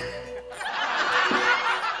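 Laughter, like a sitcom laugh track, swelling about half a second in over quiet background music.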